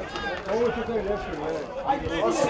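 Men's voices talking and calling out, overlapping, from people at the ground.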